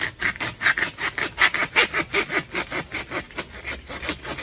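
Hand saw cutting through a large bamboo culm, quick back-and-forth rasping strokes at about five a second that stop just before the end. The upper culm's fibre is softer and easier to cut.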